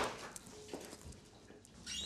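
Quiet kitchen sounds: faint small knocks and clicks of jars and packets being handled on a counter, after a brief louder knock at the start.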